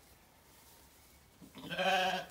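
A Zwartbles sheep bleating: one long, steady baa that starts about one and a half seconds in.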